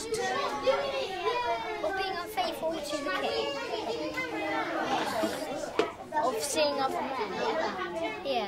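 Children talking around a table, their speech indistinct.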